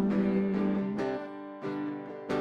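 Acoustic guitar strummed in a slow, even pattern, each chord ringing on between strokes, as a sung note ends at the very start.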